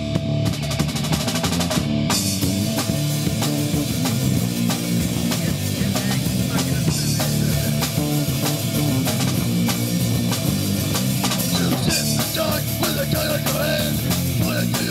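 Live rock band playing an instrumental passage with no vocals: a drum kit keeping a steady beat under electric guitar played through an amplifier.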